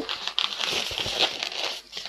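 Inflated 260Q latex modelling balloon rubbing against the hands as it is squeezed and twisted into bubbles: a continuous scratchy rubbing with small ticks.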